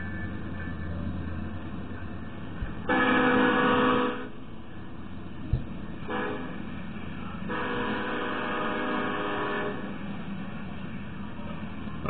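Norfolk Southern SD70M-2 locomotive's Nathan K5LLA five-chime air horn sounding for a grade crossing as the train approaches: one blast about three seconds in, then a longer sounding from about six seconds to nearly ten seconds in, over a steady low rumble of the approaching train.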